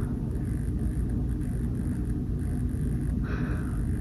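Steady low background rumble with a faint hiss, unchanged throughout, and a brief faint soft noise about three seconds in.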